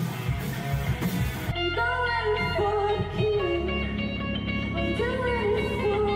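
Live rock band on a concert recording. Drums and distorted electric guitar play together until about a second and a half in. Then the drums drop out and an electric guitar plays bending lead notes over held low bass notes.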